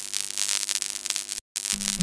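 Digital glitch static sound effect over intro music: a crackling hiss with faint held tones underneath, cut by a split second of dead silence about one and a half seconds in.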